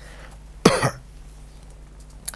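A man coughs once, briefly, into his fist, about two-thirds of a second in.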